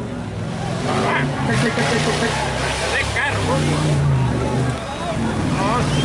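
Engine of an off-road 4x4 race vehicle working through deep mud, its revs rising and falling, with voices over it.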